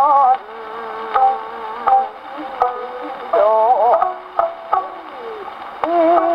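Acoustically recorded 78 rpm shellac disc of a kouta played on a wind-up Victrola gramophone: a woman's wavering, ornamented singing over sharp shamisen plucks, with steady record-surface hiss and a narrow, boxy, treble-less tone.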